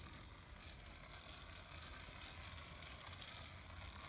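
Quiet, steady whirr of the small electric motor and running gear of a Playcraft 0-4-0 tank locomotive model, pulling a goods train slowly around its track.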